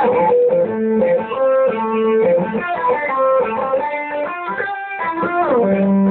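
Solo electric guitar playing a fast legato run of sustained notes in two-handed fretboard tapping style. Near the end it slides down into a long held low note.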